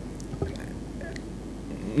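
Quiet pause in a room with a steady low hum, a faint click about half a second in, and a few faint, indistinct voice sounds.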